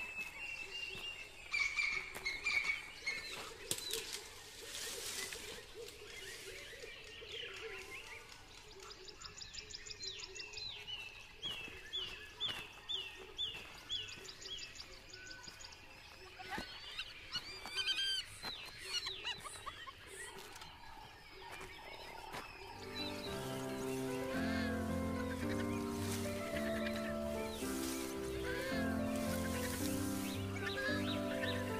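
Birds calling in the bush, with a run of about eight short repeated calls near the middle. About two-thirds of the way in, background music with a bass line begins.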